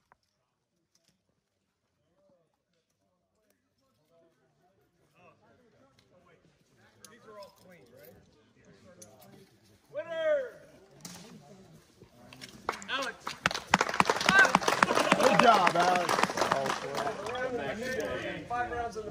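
Near silence at first, then several men's voices talking and laughing over one another, growing louder, with one loud call about ten seconds in.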